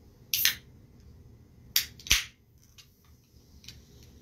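Sharp clicks and knocks: three loud ones in the first two seconds or so, the last two close together, then a few faint ticks.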